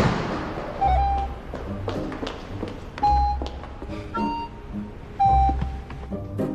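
A car door shuts with one loud thud at the start. Then background music with a deep, slow beat about every two seconds under held melody notes.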